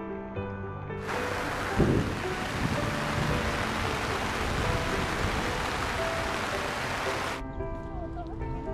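Heavy rain falling as a dense, steady hiss that starts about a second in and cuts off abruptly shortly before the end, with a low thump about two seconds in. Soft background music with held notes plays under it throughout.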